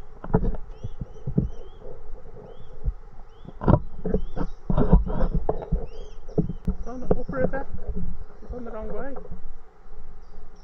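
Swan cygnets peeping: thin, high chirps repeated about once or twice a second, over irregular knocks and splashes from a paddle in the water.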